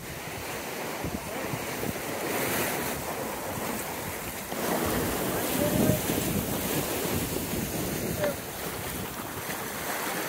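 Water rushing and foaming past the hull of an S2 9.1 sailboat sailing fast through choppy water, with wind buffeting the microphone. The rush of water swells briefly about halfway through.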